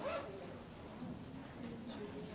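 Low murmur of voices in a room, with one short high vocal sound rising in pitch at the start.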